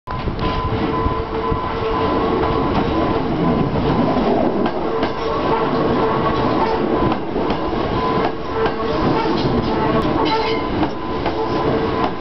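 Keio electric commuter train rolling slowly from the depot across the points into a station track. Its wheels rumble steadily under a continuous steady tone, with a few clicks over rail joints near the end.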